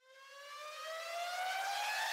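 A single synthesized rising tone, a riser sweep in the background music track, climbing about an octave in pitch while it swells in loudness.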